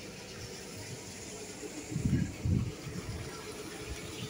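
Steady wash of harbour water and wind. About two seconds in come two short, low rumbles.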